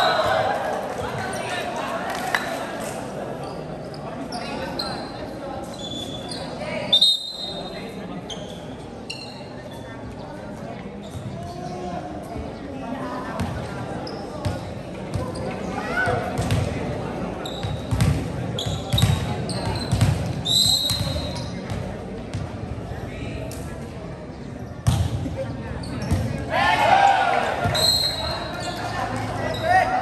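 Indoor volleyball play on a hardwood court: the ball being struck and hitting the floor, shoes squeaking briefly, and spectators and players shouting, with the crowd swelling near the start and again near the end, all echoing in a large hall.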